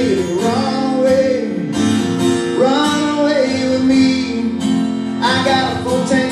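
A man singing over his own strummed acoustic guitar in a live solo performance, with short sung phrases between sustained guitar chords.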